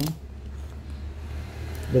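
Low, steady rumble of traffic on a busy main road.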